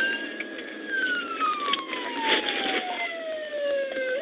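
Police car siren on the wail setting: the tone holds high for about a second, then falls slowly over the next three seconds and starts to rise again right at the end.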